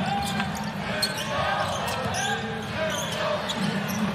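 Live basketball arena sound: a basketball being dribbled on the hardwood court over a steady crowd hum with scattered voices and short sharp squeaks and ticks from the court.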